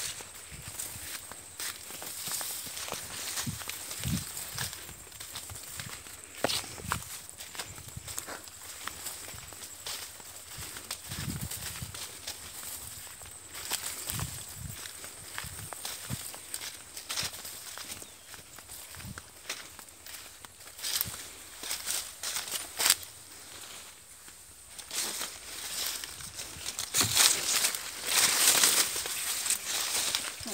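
Footsteps and rustling as a person pushes through a sugarcane field, dry cane leaves crackling underfoot and stalks brushing past in irregular bursts, louder near the end.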